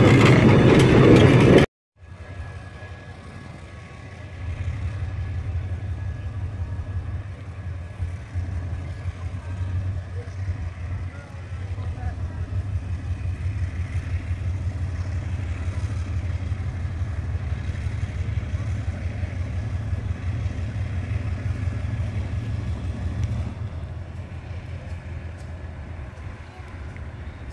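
Diesel locomotive engine rumbling low and steady in the distance as it approaches, getting louder about four seconds in. It follows a loud, close locomotive pass that cuts off suddenly near the start.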